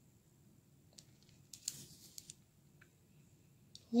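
Faint handling noise of beads being threaded onto a cord with a needle: a light click about a second in, a short scraping rustle around a second and a half to two seconds in, and another small click near the end.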